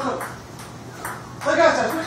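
Table-tennis ball clicking off paddles and table in a rally, a few short sharp knocks, with a man's voice rising over it near the end.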